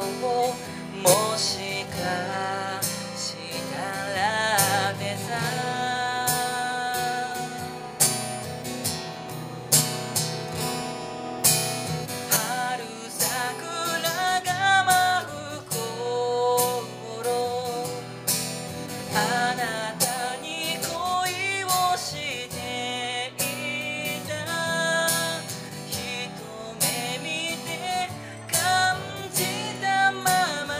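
A man singing a ballad-paced song while strumming a steel-string acoustic guitar, played live through a vocal microphone.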